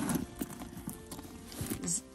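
A zipper rasp at the very start, then sparse light ticks and knocks as the main compartment of a pebbled-leather handbag is pulled open by its metal double zip and handled.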